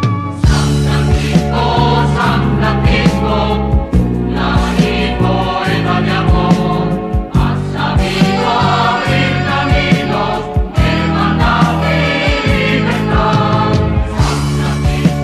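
Rock-style Spanish Catholic hymn: a group of voices sings the chorus over a band with a steady drum beat and bass, starting about half a second in after the instrumental introduction.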